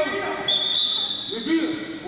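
Referee's whistle giving one steady, high blast about a second long, over voices echoing in a sports hall and a handball bouncing on the court.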